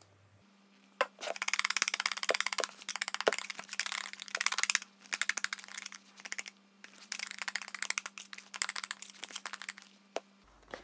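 Metal wire whisk beating a thick mixture by hand in a glass bowl: rapid clicking and scraping strokes of the wires against the glass, in bursts with brief pauses.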